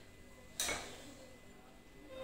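A knife clinks once against a ceramic plate about half a second in, a single sharp knock with a brief ring.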